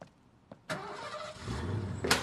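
A car engine starting: a sudden burst of noise a little under a second in, settling into a steady low running note.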